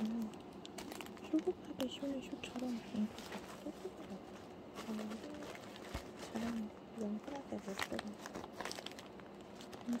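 Plastic parcel packaging crinkling and rustling as it is handled and opened, with scattered sharp crackles, under a soft low voice.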